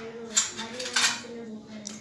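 Two sharp metal clinks about half a second apart: wound-dressing instruments being handled during cleaning of a cut.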